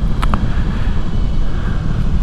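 Honda ST1100 Pan European V4 engine running with wind and road noise while riding on the move, a steady low rumble, with two short ticks just after the start.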